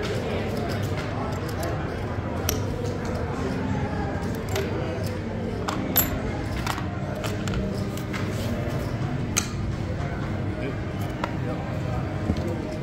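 Casino table ambience: a steady murmur of background voices, with a few sharp clicks of casino chips clacking together as they are stacked and set down, the loudest about six seconds in.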